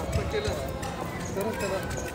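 Busy pedestrian street: footsteps of passersby on the pavement as scattered sharp clicks, with people talking nearby.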